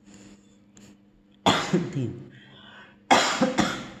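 A man coughs twice, about a second and a half in and again near the end, each a sharp burst that dies away quickly.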